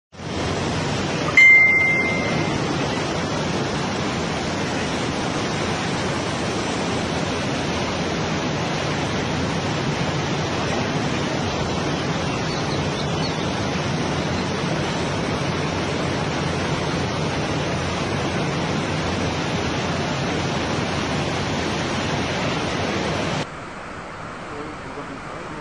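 A swollen mountain torrent rushing steadily, with no let-up. About a second and a half in, a short high beep sounds over it.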